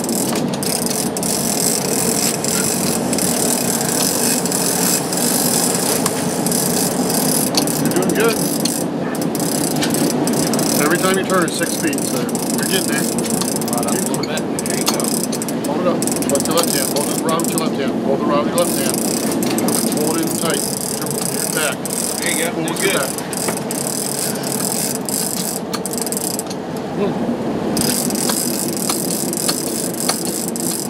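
Large conventional big-game fishing reel being cranked by hand, its gears clicking and ratcheting continuously while a fish is reeled in, over a steady background of boat and wind noise.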